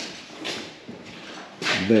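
Faint rustling, then a man starts speaking near the end.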